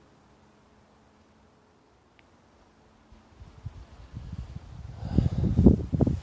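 Near silence, then from about three seconds in an irregular low rumble that grows loud near the end: handling and movement noise on a handheld camera's microphone.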